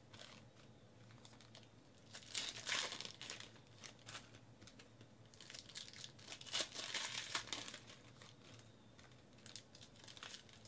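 Plastic foil wrappers of Donruss baseball card packs crinkling and tearing as packs are pulled open, in quiet bursts about two seconds in, again around six to seven seconds, and near the end, with light clicks of cards being handled in between.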